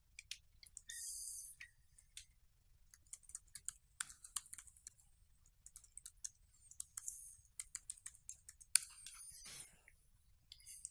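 Laptop keyboard typing: irregular keystrokes as a username and password are entered at a Windows login screen. There is a brief rushing noise about a second in and a longer one near the end.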